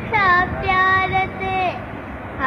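A young girl singing a Sindhi song in a high voice, with notes held up to about a second and sliding slightly in pitch, over a steady low background noise.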